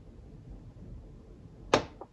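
A glass coffee server knocks once against a marble countertop as it is set down, a single sharp clack near the end with a brief ring after it; soft handling noise before.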